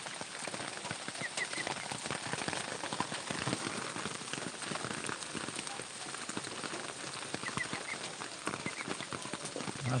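Steady rain pattering, a dense crackle of drops.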